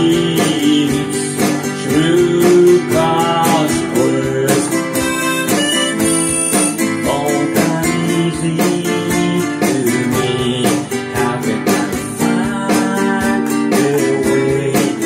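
Harmonica playing a melody over a steadily strummed nylon-string classical guitar: a solo break between sung lines, with no voice.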